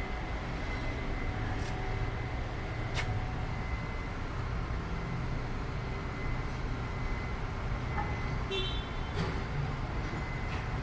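Street traffic: a steady rumble of passing road vehicles, with a few faint clicks and a brief high tone about eight and a half seconds in.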